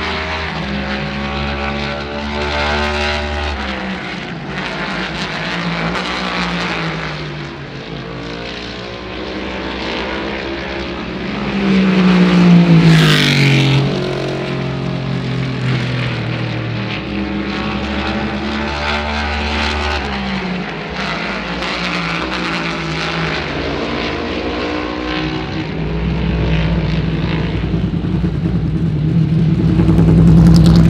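NASCAR Next Gen stock car's V8 engine running at speed on track. Its pitch climbs and drops repeatedly through the shifts and corners. About twelve seconds in it gets loudest as the car passes close, and the pitch falls away as it goes.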